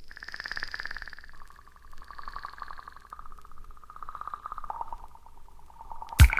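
Quiet electronic synthesizer intro: rapidly pulsing tones that step down in pitch two or three times, with a fainter high tone gliding down above them.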